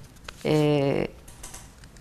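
A man's voice holding one drawn-out hesitation vowel at a steady pitch for about half a second, with a few faint clicks around it.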